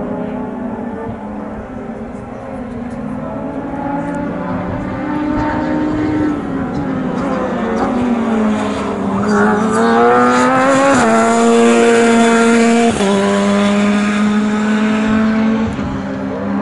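A Formula 3 single-seater race car driving past at speed, its engine note getting louder as it approaches, climbing in pitch and then stepping down sharply twice like upshifts.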